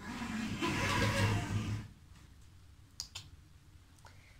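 Curtains being pulled open along their rail, a rustling rattle lasting about two seconds, then a single click about three seconds in.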